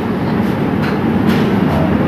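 Steady background noise, nearly as loud as the speech around it, with no clear voice.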